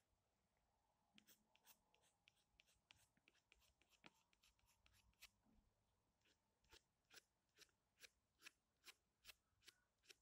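Faint, short scratchy strokes of drawing on paper. They are scattered at first, then settle into quick strokes about two a second for the second half.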